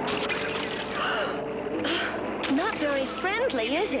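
Cartoon sound effects: short rushing noises, then from about halfway through a run of quick, sliding whistle-like warbles that swoop up and down in pitch, over a steady hum.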